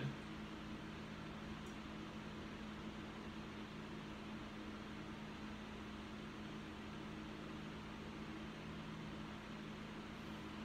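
Steady room tone: an even hiss with a low, constant hum under it, like a running fan or mains hum.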